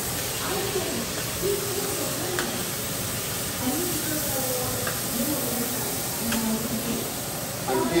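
Sliced onions sauteing in oil in a frying pan with a steady sizzle and hiss while being stirred, a metal slotted spoon giving a few light clicks against the pan. Faint talking runs underneath.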